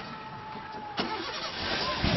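Landslide of rock and earth sliding down a hillside: a sharp crack about halfway through, then a growing rumble of moving debris.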